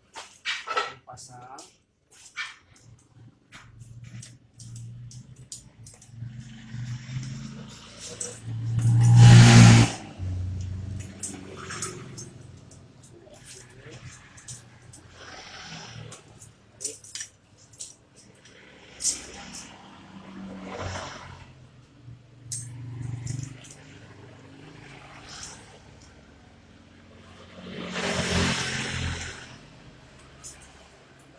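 Stainless steel strapping band being handled and fed through its buckle on a metal pole, giving many short sharp clicks and metallic rattles. Two louder swells of noise come about a third of the way in and near the end.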